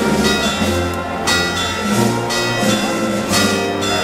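Church bells ringing over a band playing processional music, with sustained notes and a bass line that steps to a new note about once a second.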